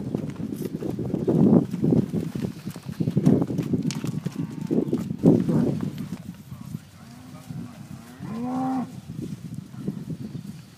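Holstein dairy cows mooing: a short call about seven seconds in, then a longer, louder one a second later. Earlier, a run of dull, irregular thumps.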